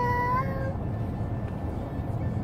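A young child's high voice holding one sung note for under a second, rising slightly before it stops, over the steady low rumble inside the car.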